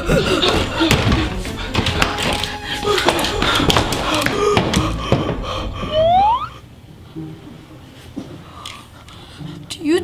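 Suspenseful background music with sharp knocks and thuds, ending about six seconds in with a rising sweep; after that it drops to a quiet low hum.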